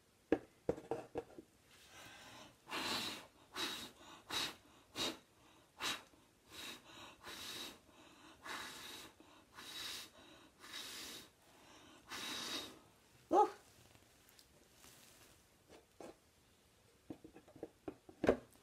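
A person blowing short puffs of breath over wet acrylic pour paint to spread it, about a dozen breathy blows in a row, some carrying a faint thin whistle.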